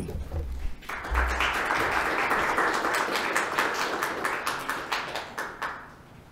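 Small audience applauding. The clapping starts about a second in and dies away near the end.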